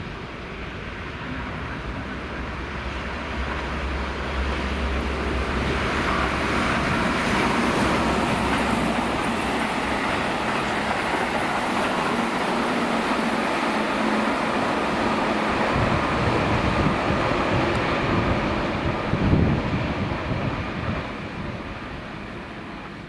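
Keihan 8000 series electric train approaching and running through a station at speed. Its wheel-on-rail rolling noise builds steadily, stays loud while the cars pass, and fades near the end. A sharp thump stands out shortly before the sound fades.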